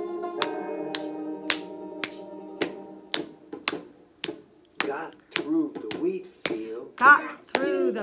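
A recorded children's action song playing from a CD. A steady beat of sharp slaps comes about twice a second under a held musical chord, and the chord fades out about four seconds in. From about five seconds in, a voice chants between the slaps.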